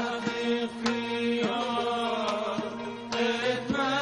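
Azerbaijani mugam: a male singer's ornamented, wavering melodic line over sustained drone notes from the string accompaniment. Several sharp strikes on a gaval frame drum punctuate it.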